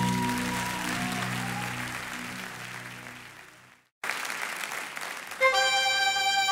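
Audience applause at a live concert over the fading last chord of a song, dying away to a moment of silence about four seconds in. Applause then comes up again with the next live track, and near the end a held instrumental chord starts.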